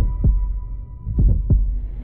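Heartbeat sound effect: two slow double thumps, lub-dub, about a second apart, under a faint steady high tone that fades away.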